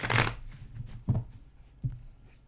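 A tarot deck being shuffled by hand: a loud rustle of cards at the start, then two short, dull knocks.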